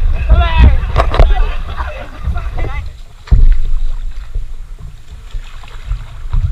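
Voices talking for the first half or so over a low rumble of wind and water on a camera mounted on the front of a river paddleboard. A sudden low thump comes about three seconds in.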